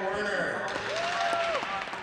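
Spectators clapping in an ice arena, starting a little under a second in, after a starting-lineup name is read out over the public-address system.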